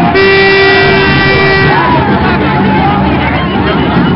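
A horn sounding one steady blast of about a second and a half, over the chatter of a large outdoor crowd.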